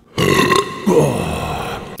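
A person's drawn-out, rough vocal sound lasting nearly two seconds, with a brief drop in pitch about a second in.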